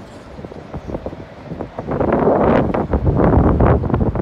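Wind buffeting the microphone in uneven gusts, a low rumble that grows much louder about halfway through.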